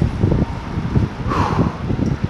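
Wind buffeting the microphone of a camera carried on a moving bicycle, mixed with passing road traffic, as a dense, fluttering rumble. A brief breathy hiss stands out about one and a half seconds in.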